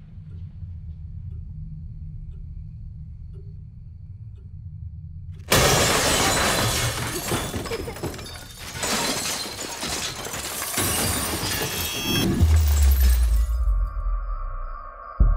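Horror-trailer sound effects: a low rumbling drone, then about five and a half seconds in, a sudden loud crash of breaking and shattering that goes on for several seconds, ending in a deep boom.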